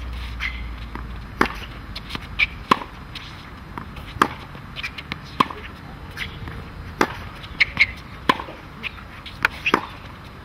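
Tennis balls struck with rackets in a groundstroke rally: a sharp pop about every second and a half, alternately louder and softer, with fainter knocks of the ball bouncing and of footwork between.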